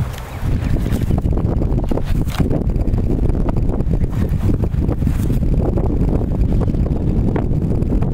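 Strong wind buffeting the microphone: a loud, steady low rumble with scattered short gusty crackles.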